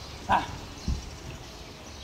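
A boxer's short, sharp shout of "bah" as he throws a punch at a heavy bag. A brief dull thud follows just under a second in.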